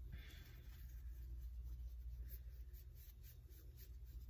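Faint rustle and soft ticks of tarot cards being handled and shuffled, over a steady low hum.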